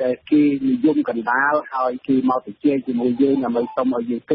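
Speech only: a voice talking in Khmer in a radio news broadcast, with the narrow, thin sound of a radio recording.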